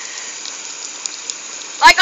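Garden hose spraying water upward onto horses in a steady hiss, with a voice starting near the end.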